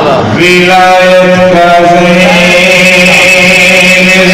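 A man's voice chanting a qasida, settling about half a second in onto one long held note that shifts slightly in vowel and pitch as it goes.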